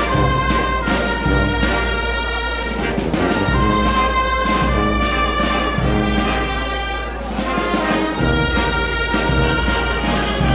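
Music led by brass in slow held chords, with timpani-like drums beneath.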